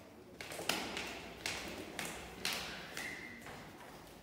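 Footsteps going down tiled stairs, a sharp tap roughly every half second.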